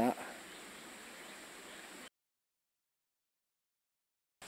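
A man's voice finishes a word, followed by about two seconds of faint outdoor background hiss that cuts off abruptly into dead digital silence, an edit in the recording.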